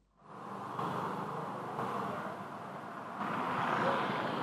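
Steady outdoor street background with traffic noise, heard through a live-broadcast field microphone. It comes in after a brief dropout and grows a little louder about three seconds in.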